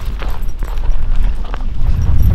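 Quick walking footsteps on a dry, crusted salt flat, about three or four steps a second, over a steady low rumble.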